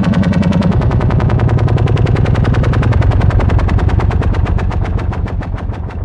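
ElectroComp EML 101 analog synthesizer sounding a low tone chopped into a rapid, even stream of pulses. The pitch steps down about a second in, and the sound fades near the end.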